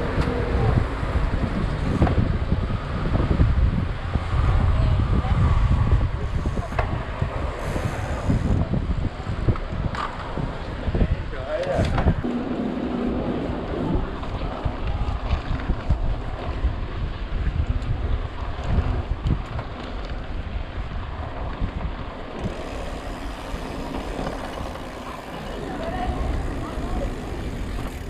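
Wind buffeting the microphone of a camera on a moving bicycle in city traffic, with car and bus engines passing close by.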